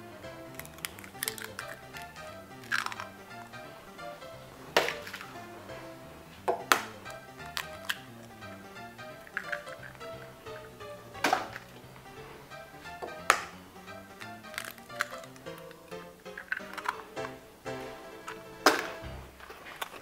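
Soft background music, broken by about six sharp taps as eggs are cracked against the rim of a mixing bowl.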